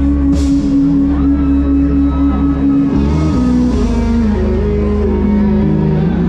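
A live band playing loudly on stage, with guitar over a steady bass; the chord changes about halfway through.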